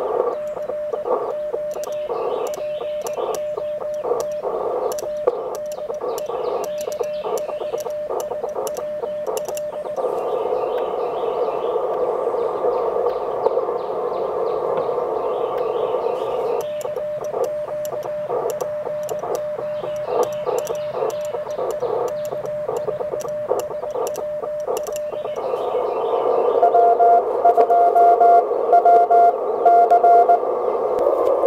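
Morse code sidetone from a Mission RGO One transceiver, keyed by hand on a paddle in two spells of sending. Between the spells the receiver's band hiss comes through its narrow CW filter. Near the end a louder Morse signal at a slightly higher pitch comes in over the receiver.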